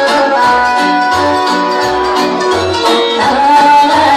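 Romanian taraf folk band music at full volume, with a bass line alternating between two notes under sustained melody lines.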